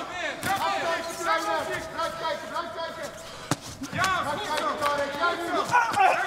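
Voices talking and calling out, with sharp thuds of kickboxing strikes landing; the clearest thud comes about three and a half seconds in.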